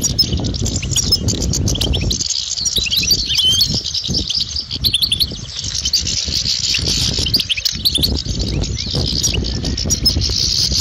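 European goldfinches twittering: a dense run of quick, high chirps and short trills.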